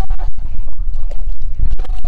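Loud, low buffeting rumble on a handheld phone's microphone, with scattered short knocks.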